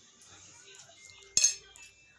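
A single sharp clink of cutlery against a dinner plate about a second and a half in, with a short high ring after it.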